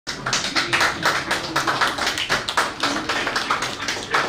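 A few people applauding by hand, a quick, uneven run of claps.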